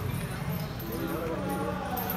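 Indistinct voices of people talking, over a low steady hum.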